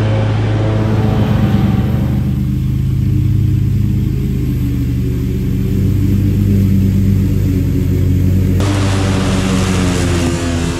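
Zero-turn riding mower running steadily under load, its blades cutting through tall, overgrown grass on side discharge. For several seconds in the middle the cutting hiss drops away, leaving mainly the engine's steady hum, and it comes back near the end.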